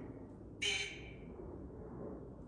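A short hissing burst about half a second in that fades away within about half a second, over a faint steady background hiss.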